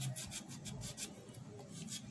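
A lemon half being squeezed and wrung by hand, the rind rasping between the fingers in a quick run of strokes, about six a second, that thins out near the end.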